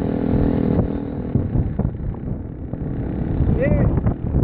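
Motorcycle engine running steadily under rumbling wind and road noise while riding. The steady engine note fades out about a second and a half in. A brief shout comes near the end.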